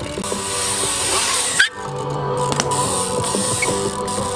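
Background music with a steady beat, under a hiss that builds over the first second and a half and cuts off suddenly, after which the music carries on.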